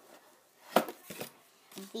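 Hand handling items in an open cardboard craft-set box: one sharp clack about three-quarters of a second in, followed by a few lighter taps.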